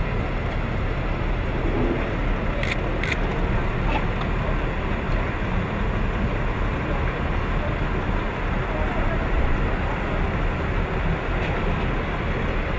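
Steady low rumble of a motor vehicle, with a few sharp clicks about three seconds in and indistinct voices behind it.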